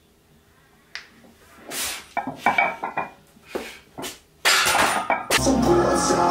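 Loaded barbell and steel squat rack clanking, with several sharp metal-on-metal clinks and short rings as the bar is set back into the rack after a squat. Music starts about five seconds in.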